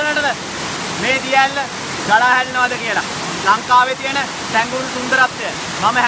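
Waterfall cascading over rock steps, a steady rushing sound, with a man talking over it almost throughout.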